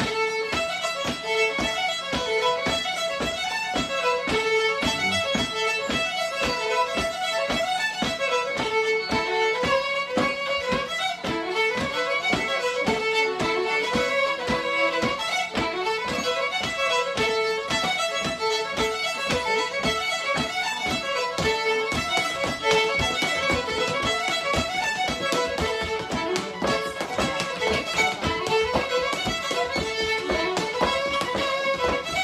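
Two fiddles playing a quick Cape Breton fiddle tune together, a steady run of fast notes without a break.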